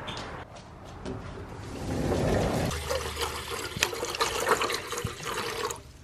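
Water running into a stainless steel dog bowl, swelling about two seconds in, followed by a run of light clicks and rattles.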